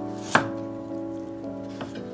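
Kitchen knife slicing through a garlic clove onto a wooden cutting board: one sharp chop about a third of a second in and a fainter one near the end, over soft background music.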